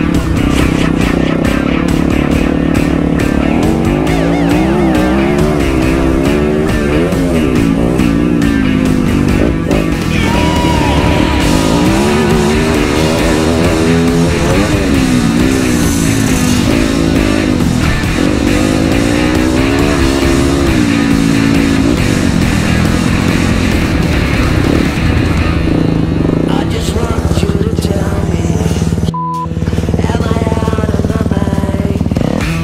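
A Yamaha dirt bike's engine revving up and dropping back again and again as it is ridden hard, with music playing over it. The sound cuts out briefly near the end.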